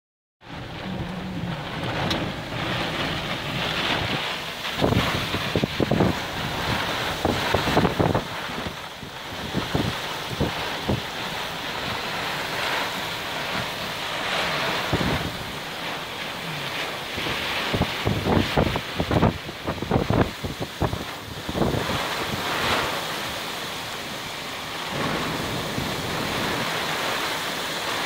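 Wind-driven heavy rain and strong gusting wind of a thunderstorm squall, a steady roar that swells and falls, with gusts hitting the microphone again and again.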